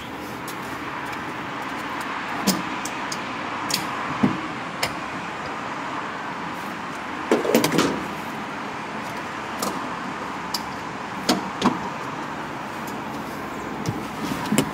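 Steady outdoor gas-station background noise heard from inside a car through its open door, broken by a few short clicks and knocks, with a louder cluster of knocks about halfway through.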